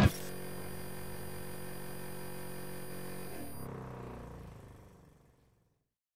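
Loud music cuts off abruptly, leaving a quiet sustained electronic drone of several held tones. The drone shifts briefly after about three seconds and then fades out to silence.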